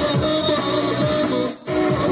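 Live band music played loud through PA speakers: an amplified long-necked plucked string instrument and an electronic keyboard carrying a wavering melody over a steady drum beat of about two beats a second. A brief dropout with a thin high tone cuts in about a second and a half in.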